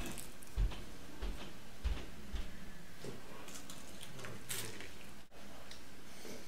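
A few soft knocks on a wooden table and faint handling noise as a plastic honey bottle is set down and a quesadilla is picked up and bitten, over a steady hiss. There is a brief crackle about four and a half seconds in, and a momentary dropout just after five seconds.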